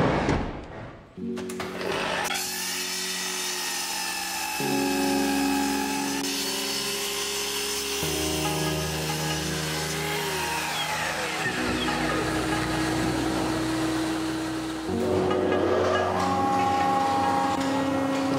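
Background music of sustained chords changing every three to four seconds, mixed with woodworking power-tool noise; a noisy burst fades out in the first second.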